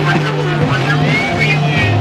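Heavy psychedelic rock music: a loud, pulsing bass line stepping between two low notes, with high lines sliding in pitch over it.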